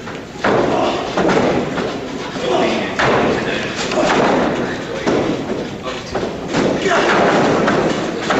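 Several heavy thuds and slams of wrestlers hitting the boards of a wrestling ring, a few seconds apart.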